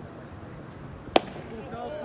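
Baseball pitch popping into the catcher's leather mitt: one sharp crack about a second in.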